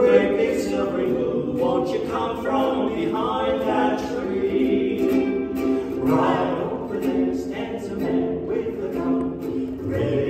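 Several voices singing together, men and a woman, with ukulele accompaniment.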